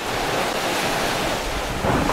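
Ocean surf: a steady rushing wash of waves that swells up slightly in the first half-second, then holds level.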